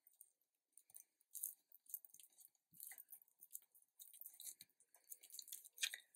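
Near silence, with faint scattered ticks and soft crackles of paper and a small card circle being handled and pressed down onto an album page.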